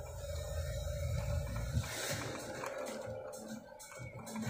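Thunder rumbling low for about two seconds, then dying down into weaker low rumbles.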